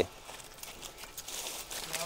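Leaves and stems rustling and crackling as people push into dense undergrowth, a continuous crackle that builds from about half a second in.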